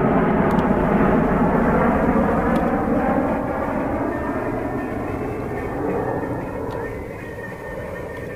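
A motorboat engine running steadily, slowly getting quieter.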